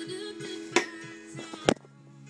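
Wooden broom handle falling over and knocking against things: two sharp knocks, the second louder, near the middle and near the end. Background music plays underneath.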